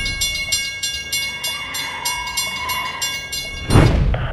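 Railroad crossing bell ringing in quick, even strikes, about four a second. A loud whoosh swells up near the end.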